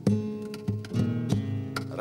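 Solo acoustic guitar playing a short passage of plucked chords, about five strikes in two seconds, each left to ring, with no voice over it.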